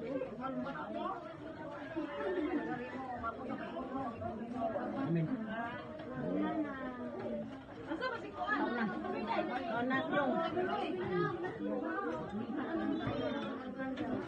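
Many people talking at once: continuous overlapping chatter of a group of voices, none standing out.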